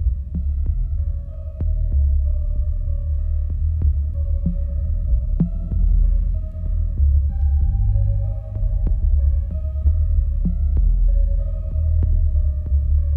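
Electronic track played from a vinyl record on a Technics turntable: a deep throbbing bass pulse under scattered sharp clicks and a few held high notes that change pitch now and then.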